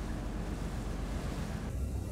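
Open-sea ambience: a steady wash of waves with wind buffeting the microphone. Near the end the hiss drops away, leaving a low steady hum.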